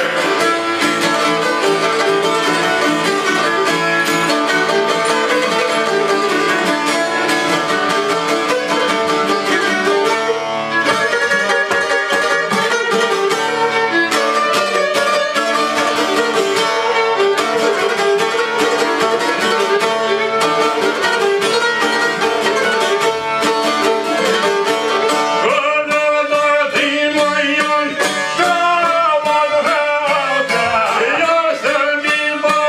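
Albanian folk string ensemble playing an instrumental passage: a violin bowing the melody over rapidly plucked long-necked lutes, a small çifteli and a larger lute with a big rounded body. The playing changes character about four seconds before the end.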